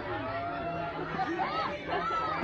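Several people chattering at once in the background, voices overlapping without clear words.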